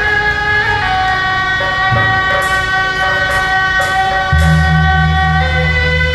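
Live beiguan procession music: suona shawms play a loud, reedy melody over percussion, with a few short cymbal-like clashes in the middle. A heavy low rumble joins about four seconds in.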